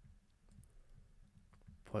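Faint, scattered clicks of a stylus tapping on a drawing tablet while handwriting.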